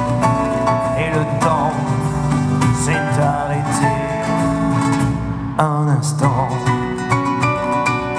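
Live band playing an instrumental passage of a French chanson: acoustic guitar with keyboard, double bass and drums.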